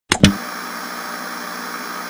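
Analog TV static sound effect: two sharp clicks, then a steady hiss.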